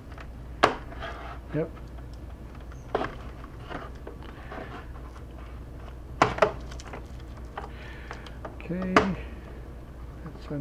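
Plastic snap clips on the case of an HP Pavilion 23 all-in-one computer popping loose as the back is pulled away from the front bezel. Several sharp clicks, the loudest about half a second in and near the end, with a quick pair a little past the middle.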